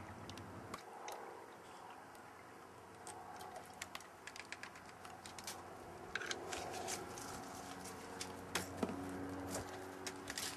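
Faint, scattered clicks and light taps of a plastic foam-concentrate container being handled and emptied into the water-filled tank of a Macaw compressed-air-foam backpack.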